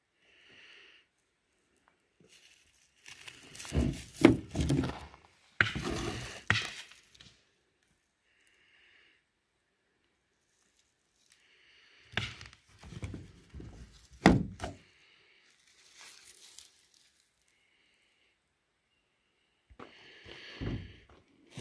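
Chunks of chalcopyrite-bearing ore handled in gloved hands, knocking and clacking against one another and against the surface they lie on. They come in three clusters of sharp knocks, a few seconds in, around six seconds in, and again past the middle, with quiet gaps between.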